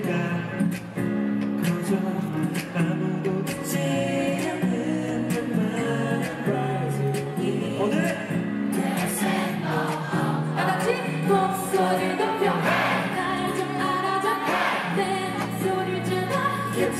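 Live pop song over a PA system: a woman singing into a handheld microphone with band accompaniment. The accompaniment grows fuller and brighter about nine seconds in.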